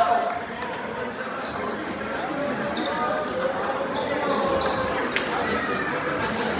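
Basketball gym during a stoppage: a steady murmur of crowd and player voices, with sneakers squeaking on the hardwood floor several times and one sharp knock about five seconds in.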